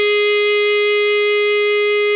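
Clarinet holding one long, steady note, a tied note sustained without change in pitch or loudness.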